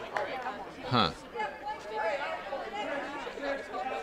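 Spectators chattering indistinctly, several voices overlapping. About a second in, one short, louder sound falls steeply in pitch.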